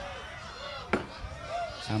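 A single sharp wooden knock about a second in, from the dalang's cempala striking the wooden puppet chest (kotak).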